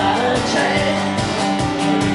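Acoustic guitar strummed in a steady rhythm, with a man singing live into a microphone over it.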